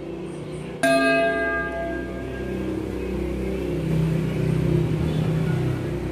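A single bell struck once about a second in, ringing out with several clear tones and fading over about two seconds, over a low rumble that swells near the end.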